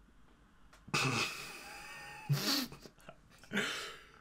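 A person's high-pitched squealing, laughing cries in three outbursts, the first and longest about a second in.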